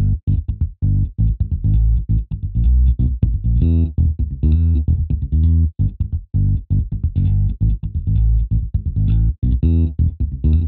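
UJAM Virtual Bassist Royal, a sampled-bass software instrument, playing a solo bass line of short, choppy plucked notes with an acoustic bass sound.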